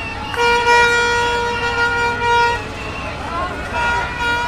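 A red plastic protest horn blown in one long steady note: it pauses briefly just at the start, then holds until a little past halfway through and stops. Shouting voices of the crowd follow.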